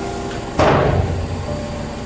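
A single sudden bang about half a second in, fading out over about half a second, over a steady ventilation hum.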